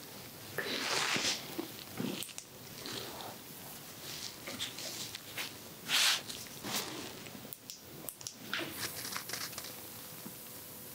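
Ear-cleaning tools working at the ear canal, heard close-up as irregular scratching and crackling, with louder rustling bursts about a second in and about six seconds in.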